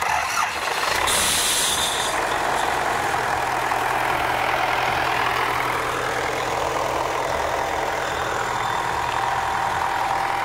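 Tractor engine running steadily with a CLAAS Rollant 46 round baler hitched behind it, starting abruptly. A brief high hiss rises over it about a second in.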